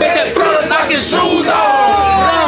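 A group of football players shouting and yelling together in celebration, many loud voices overlapping.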